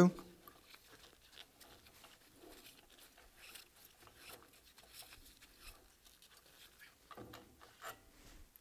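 Faint small clicks and rubbing of a steel Allen key working a pump shaft-coupling bolt loose, with gloved hands handling the metal parts.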